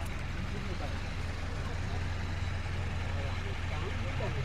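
A steady low hum like an idling engine, with faint voices talking in the background.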